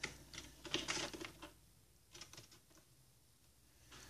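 Faint, light clicks and taps of a plastic action figure and its small accessories being handled on a wooden shelf. A quick cluster comes in the first second and a half, then a few more a little after two seconds in.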